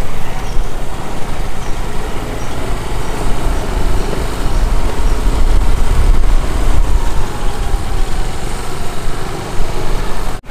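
A motorbike or scooter ridden over a bumpy dirt track: its small engine running under a heavy, uneven rumble of wind on the microphone.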